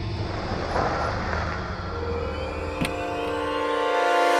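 A car engine's low rumble under dramatic background music, fading out after about two and a half seconds. A sharp click comes near three seconds, and the music settles into sustained chords near the end.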